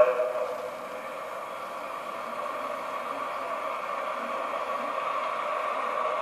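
Steady hiss of recording and room noise, even throughout.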